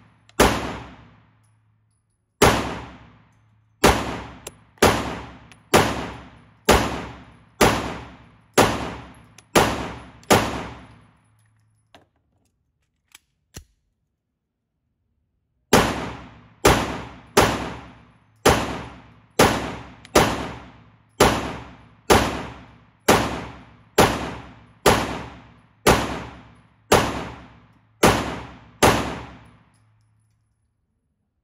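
9 mm Steyr C9-A1 pistol fired in slow, steady strings of about one shot a second, each report echoing in an indoor range. A pause of about four seconds near the middle holds only a few faint clicks before the firing resumes.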